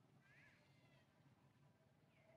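A faint, short, whining call from a long-tailed macaque, one note that rises and then falls, about half a second in.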